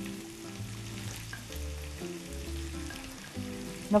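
Minced meat, onions and peppers sizzling in a frying pan while chopped tomatoes are spooned in, under soft background music.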